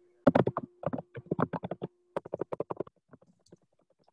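Computer keyboard being typed on in quick, irregular keystrokes, heard over a video-call microphone, thinning out near the end.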